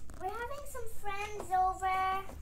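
A young girl singing a short wordless tune in a high voice: a few sliding notes, then two long held notes.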